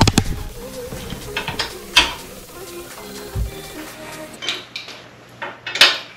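Metal clinks and knocks of hand tools and fender hardware as the fender's bolts and nuts are fitted and tightened, a few sharp knocks standing out at the start, about two seconds in and near the end.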